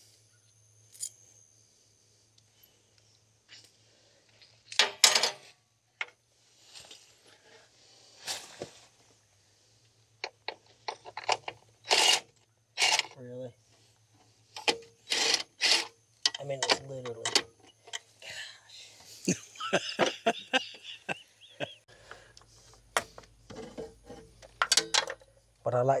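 Scattered metallic clinks and knocks of hand tools on a truck battery box as the battery hold-down nuts are worked loose with a wrench, socket set and a cordless impact driver, with a few low muttered words in between.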